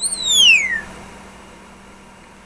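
Congo African grey parrot whistling once: a single loud whistle that glides steadily down in pitch and lasts under a second.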